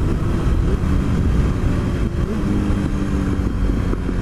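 Honda CBR954RR Fireblade's inline-four engine running at riding speed through a curve, its note shifting a little about halfway through, under heavy wind rumble on the microphone.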